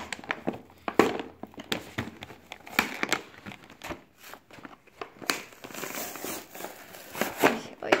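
A toy's clear plastic blister pack and cardboard backing crinkling and tearing as they are pulled apart by hand, in a run of irregular crackles and rustles.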